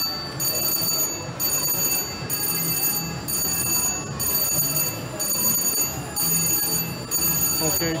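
Casino slot-floor sound: steady, high electronic ringing tones from slot machines, pulsing about once a second, over background voices.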